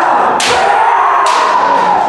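Kendo kiai: the fencers letting out long, drawn-out yells that overlap, with new shouts breaking in sharply twice, as the bout opens.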